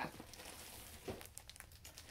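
Faint rustling and crinkling of yarn packaging being picked up and handled.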